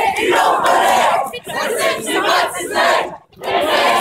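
A crowd of protesters shouting together, many loud voices overlapping. The sound cuts out sharply for an instant about three seconds in.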